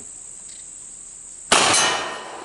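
One shot from a 1917 Smith & Wesson .45 ACP double-action revolver about one and a half seconds in: a sharp, loud report that rings off and fades. A steady high-pitched insect buzz runs under it.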